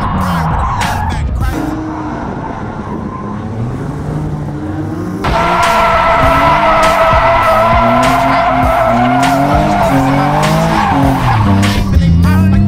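VQ-swapped Nissan 240SX's V6 engine revving up and down through a drift, with tires squealing. Its pitch rises and falls repeatedly. About five seconds in a loud, steady tire squeal sets in and holds to the end.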